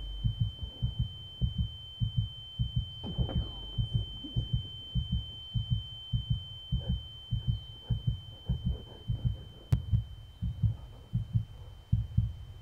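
Film sound design: a heartbeat, a quick run of low thumps falling in pairs, under a steady high-pitched ringing tone. A short falling glide sounds about three seconds in.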